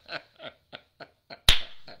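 A man laughing under his breath in a run of short breathy pulses that fade away, then one loud, sharp smack about one and a half seconds in.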